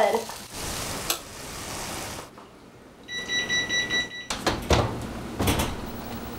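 Food sizzling in a hot skillet as its contents are scraped out. This is followed by a steady electronic appliance beep of about a second, then a couple of knocks.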